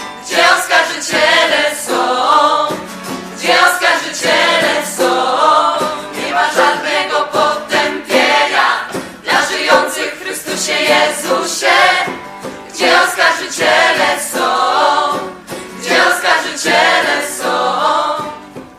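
Music: a group of voices singing a religious worship song in choir style, with accompaniment.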